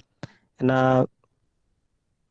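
Two short clicks, then a voice over a video call holding one drawn-out syllable.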